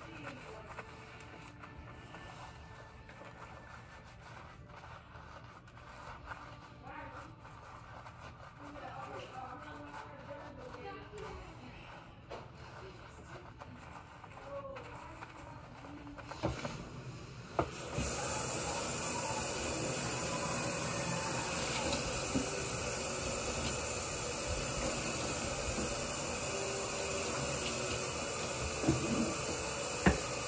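Kitchen sink faucet turned on a little over halfway through: water starts suddenly and runs in a steady hiss as it pours onto hair and into the sink. Before that there are only faint low sounds of hands working shampoo lather.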